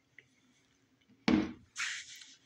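A single sharp knock a little past a second in, dying away quickly, followed by a short hiss near the end.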